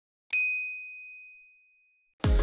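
A single bright bell ding, the notification-bell sound effect of a subscribe animation, struck about a third of a second in and ringing out at one high pitch for about a second and a half.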